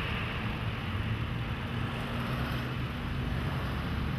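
Street traffic: cars driving past and slowing at a crosswalk, a steady rumble of engines and tyres with a faint engine hum through the middle.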